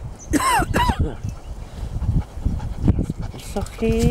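Strong wind buffeting the microphone, a steady low rumble. About half a second in come two short, high calls that fall in pitch, and a brief steady pitched sound follows near the end.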